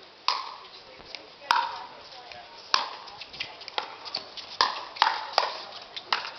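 Pickleball paddles striking a plastic ball: sharp, hollow pops at uneven spacing, about eight in six seconds, from rallies on the nearby courts.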